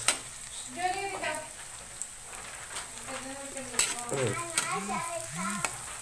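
Chopped onion and garlic sizzling in oil in a stainless steel wok, stirred with a metal spatula that clicks and scrapes against the pan now and then. A voice is heard faintly at times.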